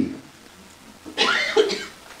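A man coughs once into the podium microphone about a second in, a short, loud burst.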